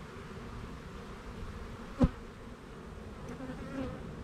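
Honeybees humming around an opened hive, with one sharp knock about halfway through.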